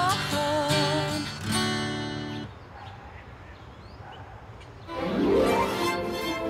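A woman singing with vibrato over acoustic guitar, ending a phrase with a held chord that dies away about two and a half seconds in. After a quieter gap, the guitar and music come back in about a second before the end.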